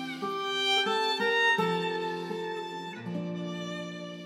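Violin and acoustic guitar duo playing a tune: the violin holds long bowed notes, moving to a new note every second or so, over the guitar's accompaniment.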